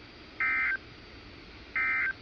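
NOAA Weather Radio SAME digital data bursts: two short, identical, buzzy screeches about 1.35 s apart, the first about half a second in and the second near the end. Their short length marks them as the end-of-message (NNNN) code that closes the flash flood warning broadcast, heard through the receiver's speaker over a steady hiss.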